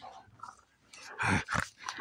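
German shepherd puppy growling twice in short bursts about a second in, close to the microphone, while playing over a toy.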